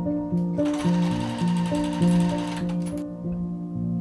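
Electric sewing machine stitching for about two and a half seconds, then stopping, under background music.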